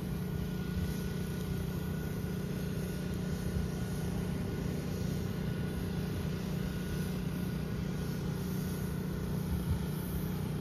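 Steady low mechanical hum of urban background noise, unchanging throughout, with faint steady higher tones above it.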